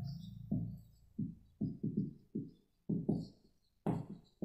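Marker writing on a whiteboard: a run of faint, short strokes, about two a second, as letters are written.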